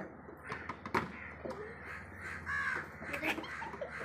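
A few harsh bird calls, with a sharp knock about a second in.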